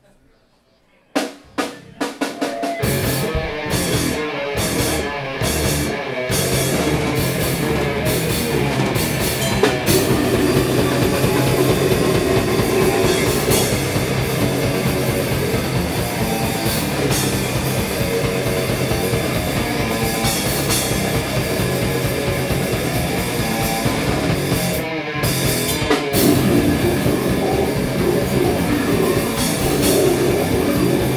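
Live heavy metal band starting a song: a few sharp drum hits about a second in, then the full band comes in with distorted electric guitar and pounding drum kit. The band stops for a moment about 25 seconds in, then crashes back in.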